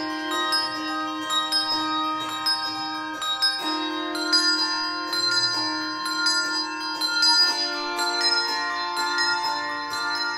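Handbell choir ringing chords of sustained bell tones, with new bells struck every half second or so. The harmony shifts a couple of times, about every four seconds.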